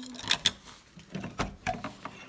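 Hotel room door being unlocked and opened: several sharp clicks and rattles from the key in the lock, the metal lever handle and the latch.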